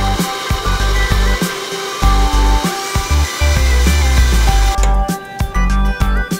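Electric stand mixer running steadily, its flat beater working an egg into creamed batter, under background music; the mixer noise stops about five seconds in.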